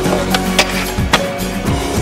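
Music playing over skateboards rolling and clacking on a concrete ledge, with a few sharp cracks of board hitting stone in the first half.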